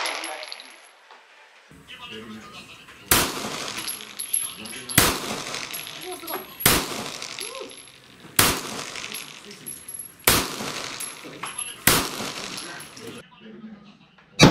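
Semi-automatic pistol fired six times, single shots a little under two seconds apart, each crack followed by a short echo off the range.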